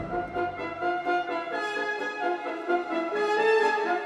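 Symphony orchestra playing, with trumpets and French horns carrying a passage of held and shifting chords. The deep bass fades out about a second in.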